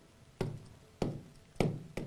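Stylus pen tapping against the glass of a touchscreen display while handwriting: four short, sharp taps about half a second apart.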